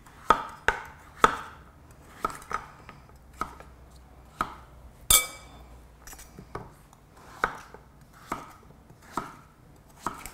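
Kitchen knife slicing through raw peeled butternut squash and knocking on a bamboo chopping board: about a dozen separate cuts, each ending in a sharp knock, spaced half a second to a second apart. One louder, ringing knock comes about five seconds in.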